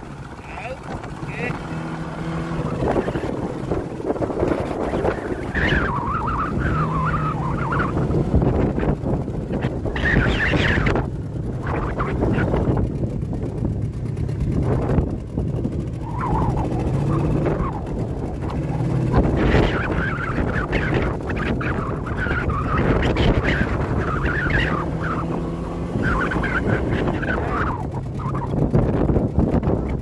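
A small fishing boat's motor running under heavy wind buffeting the microphone, with repeated high warbling squeaks coming and going while a crab gillnet is hauled aboard by hand.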